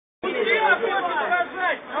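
Dense crowd chatter: many people talking at once in a large outdoor gathering. A man starts calling for quiet right at the end.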